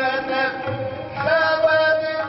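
Sikh kirtan sung in a raag: a voice holding long, wavering notes over harmonium accompaniment, moving to a new higher held note about a second in.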